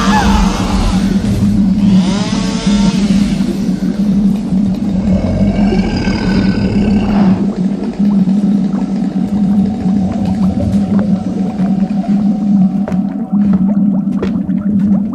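Horror sound-effects mix: a steady low drone under eerie wailing, moaning cries that bend in pitch, at the start, about two seconds in, and again from about five to seven seconds. Near the end, scattered clicks and knocks are heard.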